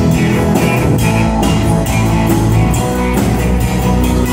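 Live country-rock band playing an instrumental passage: electric guitars over a drum kit and bass with a steady beat.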